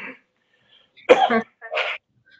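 A person coughing twice in quick succession, about a second in, after the tail end of a short laugh.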